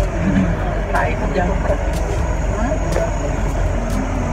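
Steady low rumble of a road vehicle heard from inside its cabin, with faint, indistinct voices of passengers over it.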